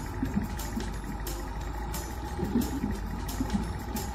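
Cartoon submarine sound effect: a steady low motor hum with bubbling and little popping blips from the propeller.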